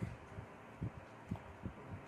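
Irregular soft low thuds, a few a second, from the signing hands brushing and tapping against the body and clothing near the microphone.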